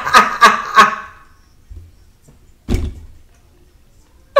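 A woman laughing hard in breathy bursts, about three a second, that die away about a second in, then a single sharp thump near the end.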